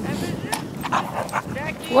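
Dogs barking during rough play, with a few short barks that build to louder ones near the end.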